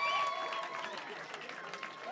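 Audience applauding, the applause fading over the two seconds, with voices over it.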